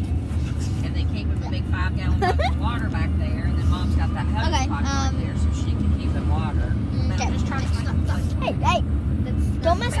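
Steady low rumble of a car driving, heard from inside the cabin, with children's voices and short vocal sounds, some sliding in pitch, over it.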